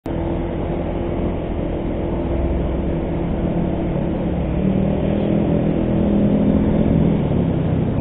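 Motor scooter riding in traffic: a steady low engine hum with road and wind noise, growing slightly louder through the stretch.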